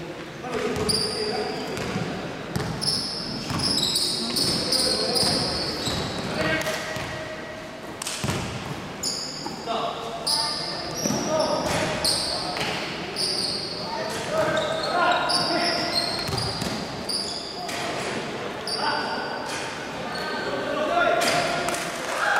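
Indoor basketball game: a ball bouncing on the hardwood court, many short high-pitched sneaker squeaks, and players' voices calling out, all echoing in a large gym.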